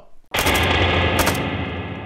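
Rifle gunfire from an AK-pattern rifle, rapid shots starting suddenly about a third of a second in, with sharp cracks standing out among them.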